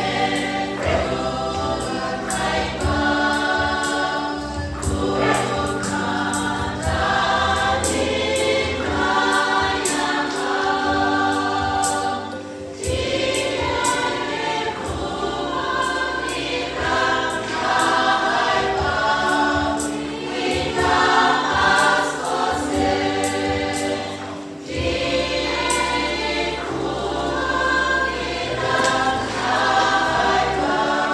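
A combined church choir of many voices singing together, phrase after phrase, with short breaks between phrases about twelve and twenty-four seconds in.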